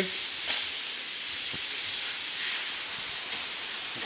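Rain falling on a cellular polycarbonate roof: an even, steady hiss.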